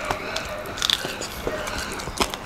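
A person chewing crisp fried food up close, with irregular crunches and mouth clicks and one louder crunch a little under a second in.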